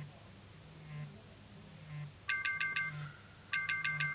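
Smartphone alarm going off on a wooden bedside table: short buzzing pulses about once a second, then about two seconds in the alarm beeps in groups of four quick high beeps, twice.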